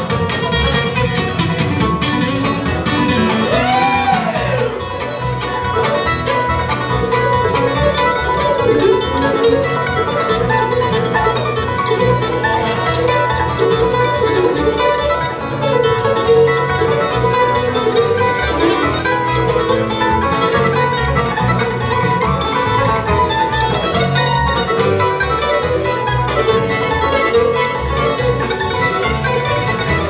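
Bluegrass band playing live: fiddle, mandolin, acoustic guitar, upright bass and banjo together, at a steady level with a pulsing bass line.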